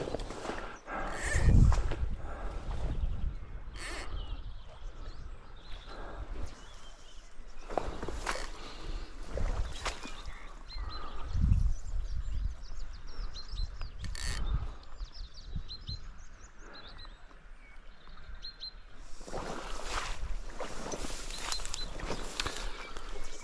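Riverbank ambience: breeze gusting over the microphone in low rumbles, with flowing river water, a few brief rustles or clicks, and small birds chirping faintly in the second half.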